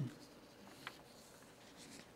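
Faint rustle of paper sheets being handled at a lectern, with one light click just under a second in.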